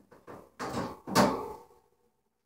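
A short series of bumps and scrapes in about four pulses, the loudest about a second in, dying away just before two seconds.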